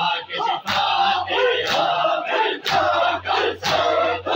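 A crowd of men doing matam, striking their bare chests with open palms together about once a second, four strikes here. Between the strikes the crowd's voices shout and chant loudly.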